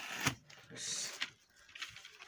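Soft scraping and a few faint clicks as a toy Jeep pickup is handled and pushed over its torn cardboard packaging, with a short hiss of rubbing about a second in.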